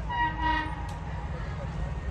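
Train locomotive horn sounding one short blast of under a second near the start, over a steady low rumble.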